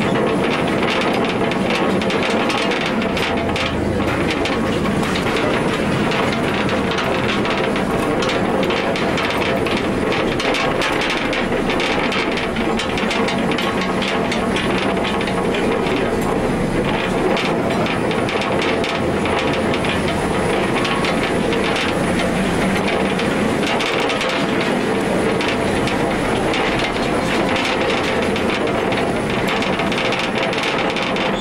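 A small mine train running along its rails through a rock tunnel: a steady rumble and clatter of wheels, with many small clicks.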